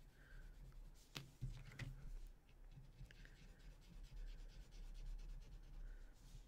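Graphite pencil shading on a Zentangle paper tile: a faint, scratchy rubbing of pencil lead on paper, with a couple of light taps a little over a second in.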